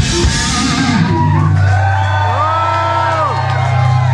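A live punk-thrash band ends a song: the full band stops on a cymbal crash, then a low held guitar and bass note rings on steadily. In the second half a long pitched cry rises, holds and falls over it.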